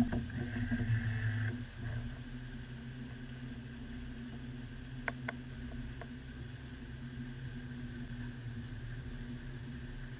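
Small boat's outboard motor running steadily, with two sharp clicks about five seconds in.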